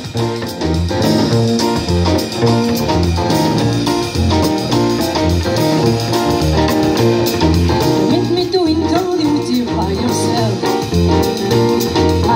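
Live jazz quartet playing: double bass notes underneath, piano chords and drums with cymbals, with a woman singing over them at times.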